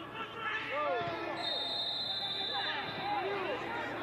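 On-pitch sound of a football match: short shouts from players and a ball being kicked, with a long, steady blast of a referee's whistle for about a second and a half near the middle.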